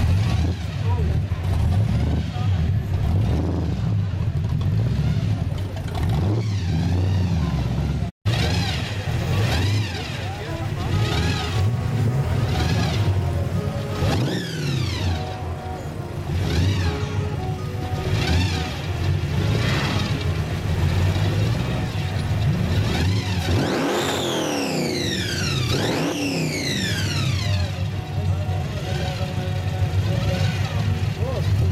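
Supercharged engine of a modified Ford Maverick running with a deep rumble and being revved several times, its pitch sweeping up and dropping back, with the biggest revs near the end.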